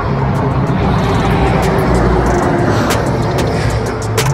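Road noise from a car passing on the highway: a steady rush with a low rumble, with background music underneath.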